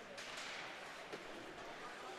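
Faint ice-rink sound of hockey play: skate blades scraping the ice, with a few light clicks of sticks on the puck.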